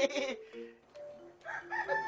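A rooster crowing in long, held notes after a brief shout.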